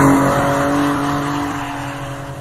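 Box truck's engine held at high revs as the truck drifts sideways on a snowy road: a steady droning note that fades away as the truck moves off.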